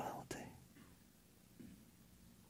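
A man's voice trailing off at the end of a spoken prayer line in the first half second, then near silence: room tone.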